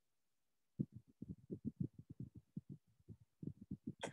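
A quick, irregular run of low thuds, about seven or eight a second, starting about a second in.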